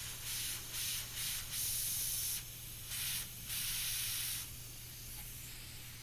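Compressed air hissing out of a leaking threaded fitting on the lid of a paint pressure tank held at about 45 psi. The hiss comes and goes in several spurts over the first four and a half seconds, over a steady low hum. The leak is at a pipe nipple threaded in without Teflon tape.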